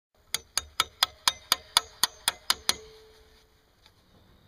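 Hammer blows on metal: ten quick, evenly spaced strikes, about four a second, the last one leaving a short ringing tone.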